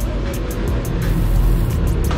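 Background music with a quick steady beat.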